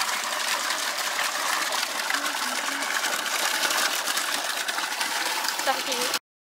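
Water from a hose gushing steadily into a plastic water tub, a constant even rush.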